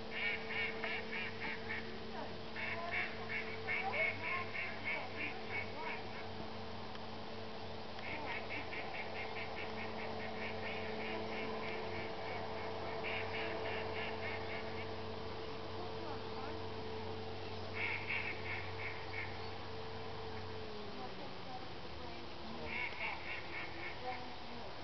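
A flock of ducks on a pond calling in rowdy bursts of rapid, repeated calls, several bursts a few seconds apart. Under them runs a steady low hum that drops in pitch about 21 seconds in.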